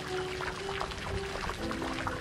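Water jetting from a plastic pipe and splashing onto the surface of a tailings pond at a cyanidation site, a steady spattering hiss, with soft background music underneath.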